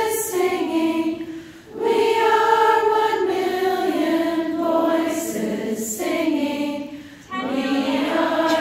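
A large group of women singing together, holding long notes that step from pitch to pitch, with brief drops for breath about a second and a half in and again near the end.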